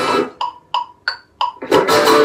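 Hollow-body electric guitar played in a strummed pop rhythm. A chord rings out and fades, then four short, separate high notes about a third of a second apart, before full strumming starts again near the end.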